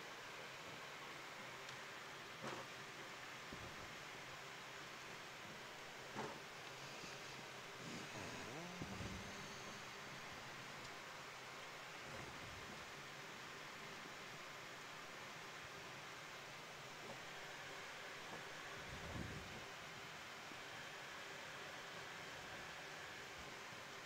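Faint steady hiss of background noise, with a few soft knocks spread through it and a brief low rumble about nine seconds in.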